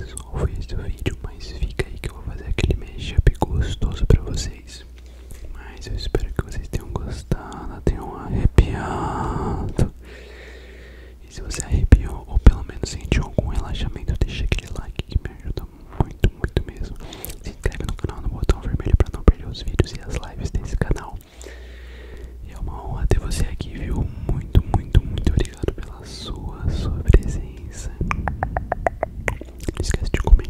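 Close, unintelligible ASMR whispering right at the microphone, broken by many short, sharp clicks.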